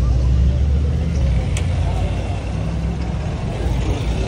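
Street noise: a steady low rumble of car traffic, with faint voices of people around.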